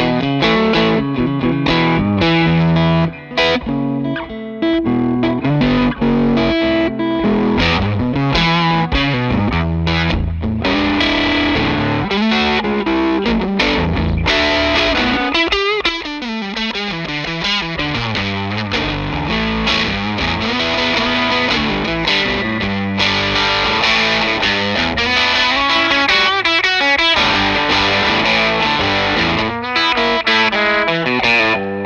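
Electric guitar played through an Electronic Audio Experiments Longsword distortion pedal: distorted chords and riffs, with a brief break about three seconds in.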